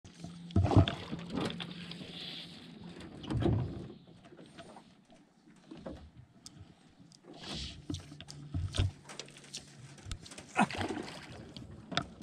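Scattered knocks, clicks and scrapes against an aluminium boat hull, with a low steady hum that comes and goes.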